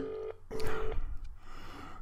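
Telephone ringing tone of an outgoing call: one double ring, two short beeps close together in the first second, while waiting for the called phone to be answered.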